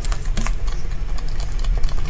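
Close-miked eating of a whipped-cream cake: irregular small clicks from chewing and from a metal spoon scooping cream, over a steady low hum.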